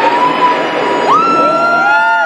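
Siren-like gliding tones from the band on stage. A held tone swoops up to a higher pitch about a second in and stays there, while a second, lower tone arches up and down beneath it.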